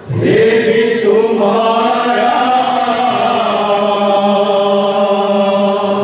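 A group of men singing a devotional kirtan in unison, holding one long sung note that slides up briefly at its start and then stays level.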